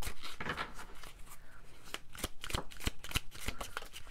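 A deck of tarot cards shuffled by hand: an irregular run of quick card slaps and flicks.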